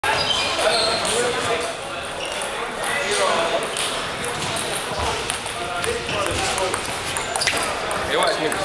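Table tennis balls clicking sharply off paddles and tables in short taps, amid people talking in a large, echoing sports hall.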